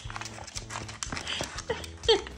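A cat's claws and paws clicking and tapping rapidly on a wooden floor as it pounces and scrambles.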